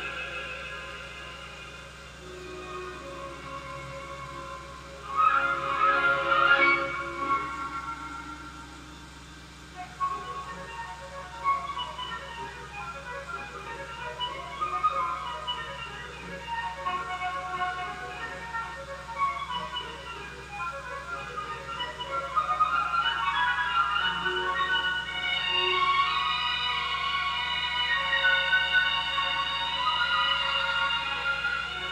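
Film score music of sustained tones, swelling louder about five seconds in and again over the last several seconds, over a steady low hum.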